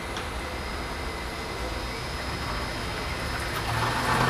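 Water rushing through a 4-inch check valve and its piping as a VFD-driven pump ramps the flow up toward about 560 gallons per minute. It is a steady rushing noise that grows a little louder near the end.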